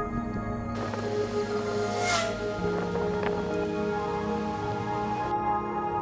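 Background music of sustained, held chords, with a hissing swell that comes in abruptly about a second in, peaks about two seconds in and cuts off suddenly near the end.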